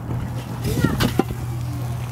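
Enamelled steel lid of a Weber Smokey Joe kettle grill being lifted off, giving a few light clanks about a second in, over a steady low hum.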